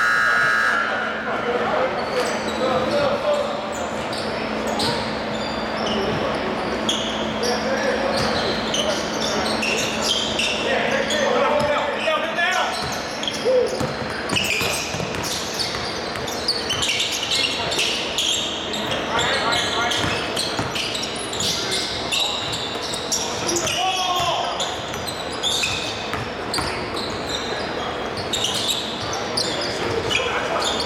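A basketball game on a hardwood gym court: balls bouncing and short sharp knocks of play, under indistinct voices of players and onlookers calling out, echoing in the large hall.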